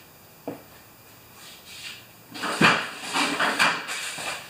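Handling noises from someone working out of sight: a single knock about half a second in, then, from a little past two seconds, a run of rustling and clattering with sharp clicks as objects are picked up and moved about.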